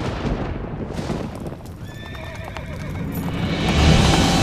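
A horse whinnies about two seconds in, over dramatic background music and a low storm rumble. The storm noise swells near the end.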